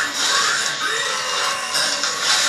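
Loud soundtrack of an animated fight: dense action sound effects, with a strained vocal cry about half a second to a second in.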